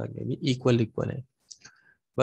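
A man's lecturing voice for about the first second, then a short pause with a few faint clicks.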